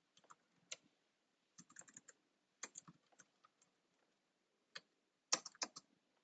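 Faint typing on a computer keyboard: irregular keystrokes in short clusters, the loudest run of keys near the end.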